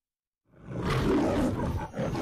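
Lion roaring in the MGM logo. The roar starts about half a second in, breaks off briefly near the end, and a second roar begins.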